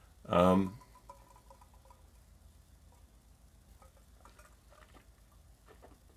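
A man's brief, loud, voiced sound lasting about half a second just after the start, right after a sip of gin and tonic. After it come only faint scattered clicks and small smacking sounds of him tasting the drink.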